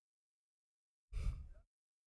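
Near silence, broken about a second in by a man's short sigh of about half a second.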